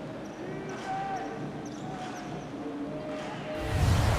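Basketball court sound during play: the ball bouncing on the hardwood amid faint voices and arena noise. Near the end a loud, low whoosh of a transition effect sweeps in.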